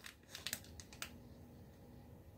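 A few faint sharp clicks of a small clear plastic wax-melt package being handled in the fingers, bunched in the first second.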